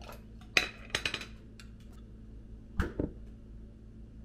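A metal spoon clinking and knocking against a glass mustard jar while mustard is scooped out. There is a sharp clink about half a second in, a quick run of clinks around a second, and two duller knocks near the three-second mark.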